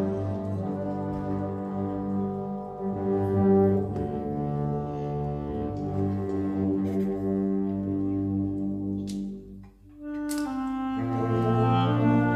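Concert wind band playing live: sustained brass, clarinet and saxophone chords. Just before ten seconds in the music breaks off for a moment, then comes back in with a sharp stroke and fuller, louder chords.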